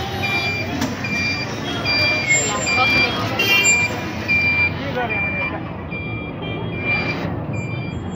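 A vehicle's electronic warning beeper sounding about twice a second, a short high tone each time, over the steady noise of street traffic and people talking.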